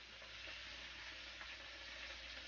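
Faint, steady sizzle of chicken, onion and vegetables cooking in a frying pan, with a couple of light clicks.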